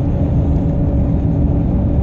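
Cab interior of a heavy diesel truck cruising on a highway: a steady low rumble of engine and road noise with a faint, even hum over it.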